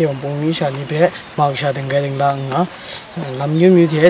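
A boy talking, with a steady high-pitched drone of insects behind his voice.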